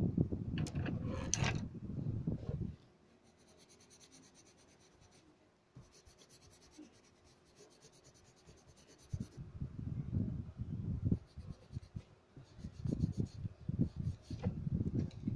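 Coloured pencil shading on paper: quick scratchy strokes that stop for several seconds in the middle, then start again.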